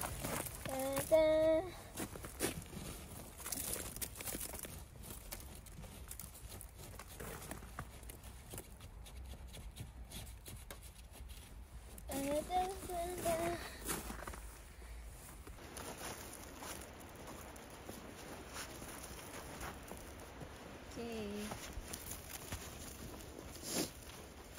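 Gloved hand wiping and scraping snow off a car window: soft scratchy crunching and rustling, busiest in the first few seconds. Three short vocal sounds break in, about a second in, near the middle and late on.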